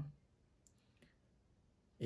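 Near silence: room tone in a pause of speech, with two faint, brief clicks, one about two-thirds of a second in and one about a second in.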